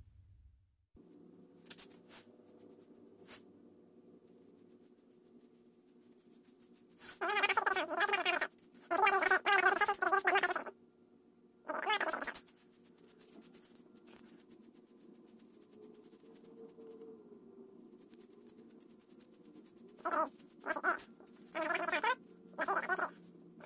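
Several drawn-out, wavering animal calls over a steady low hum, with three shorter calls near the end.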